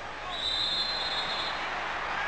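Stadium crowd noise swelling as a shot goes in on goal, with a referee's whistle blown once for about a second: play stopped for offside.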